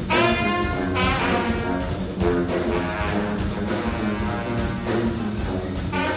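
Live brass ensemble of trumpets, trombones, tuba and saxophone playing a jazzy band piece, with sustained brass chords and accented entries at the start and about a second in, over a steady quick beat.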